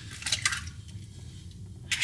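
An egg being cracked by hand and its contents dropping into a frying pan: faint, wet squishing sounds, with a sharp crack of shell just before the end.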